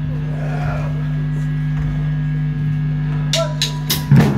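Guitar and bass amplifiers buzzing with a steady mains hum while nothing is being played. Near the end come three quick, sharp drumstick clicks.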